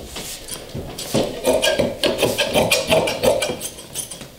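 Large upholstery shears cutting through heavy upholstery fabric: after a quieter first second, a fast run of rasping snips as the blades close through the cloth, stopping just before the end.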